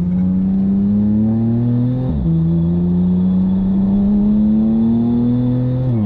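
The twin-turbocharged flat-six of a 9FF-tuned, roughly 950 PS Porsche 911 (991.2) Turbo S accelerating, heard from inside the cabin. Its note climbs steadily, drops with a quick PDK upshift about two seconds in, then climbs again through a longer pull until another upshift right at the end.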